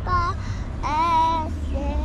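A young child singing in three short phrases of held, wavering notes: a brief one at the start, a longer one about a second in, and another starting near the end.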